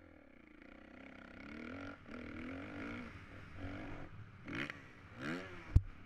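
Motocross bike engine revving up and easing off as it rides, with two quick throttle blips that rise and fall near the end and one sharp knock just before the end.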